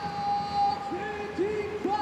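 Basketball arena crowd noise just after a made three-pointer. A single voice holds one long drawn-out call for about a second, then gives a few shorter drawn-out syllables.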